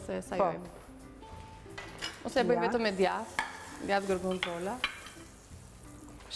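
A woman's voice in short phrases over a light sizzle from a hot crepe pan on the hob.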